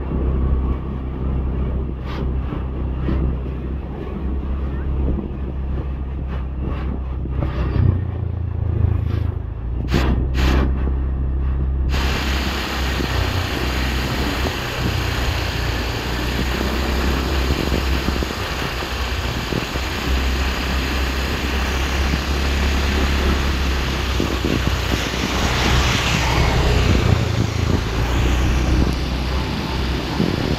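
Riding on a motorcycle or scooter: a steady low engine and road drone that shifts a little in pitch as the speed changes. From about twelve seconds in, wind rushes over the microphone and swells near the end.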